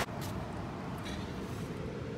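Low, steady background rumble with a couple of faint clicks; no distinct sound stands out.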